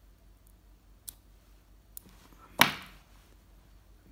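A few faint, sharp clicks of small fly-tying scissors and tools handled at the vice, spaced about a second apart, then a louder click as a single word is spoken near the end.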